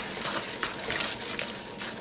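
Bare hand squeezing and kneading a raw ground-venison meatloaf mixture in a plastic bowl, making a soft, irregular wet squishing.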